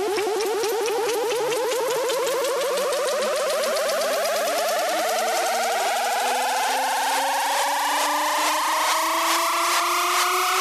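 Progressive trance build-up: a synth riser climbs steadily in pitch over rapid ticking hi-hats, and the bass drops out about halfway through.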